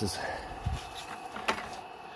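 A dull knock and then a sharp click as things are handled and moved, over a steady background hum.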